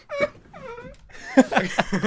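A man's voice making a short, whiny, drawn-out vocal noise, rising and falling in pitch, followed by a few mumbled, indistinct words.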